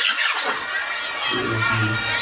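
Live concert sound: music over the PA with the crowd screaming. The bass drops out at the start and comes back in about halfway through.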